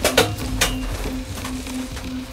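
Film soundtrack: a low rumble with a low tone pulsing on and off. It is broken by a few sharp knocks and rustles as bundles of cash are stuffed into a duffel bag.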